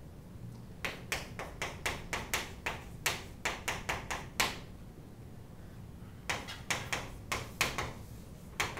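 Chalk writing on a chalkboard: a quick run of sharp taps and short strokes as letters are written. It starts about a second in, pauses for about two seconds midway, then resumes.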